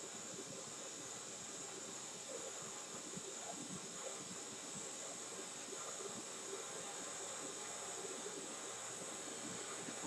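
Quiet room tone: a steady, faint hiss with no distinct events.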